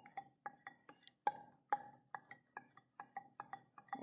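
Wooden spoon tapping and scraping the inside of a small glass bowl to get out leftover salt: a quick, irregular run of light clinks, about three or four a second, each with a short ring from the glass.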